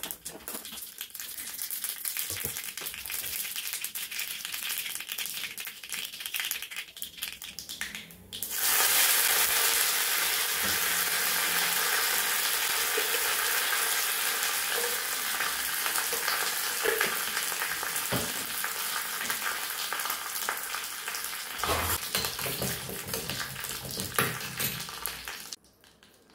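Seeds crackling in hot oil in a small iron tadka pan. About eight seconds in, the sizzle jumps much louder and holds steady as curry leaves fry in the oil. Near the end there are a few spoon knocks before the sizzle cuts off.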